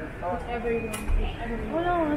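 Indistinct voices talking, with a brief sharp click about a second in.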